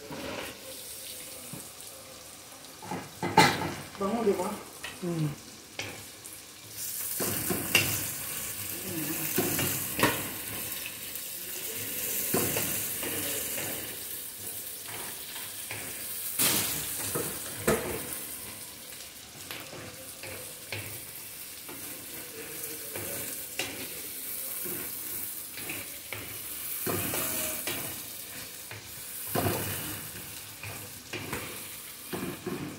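Sliced onions frying in hot oil in a wok, sizzling, with a wooden spatula stirring them and scraping and knocking against the pan. The sizzle grows much louder from about seven seconds in.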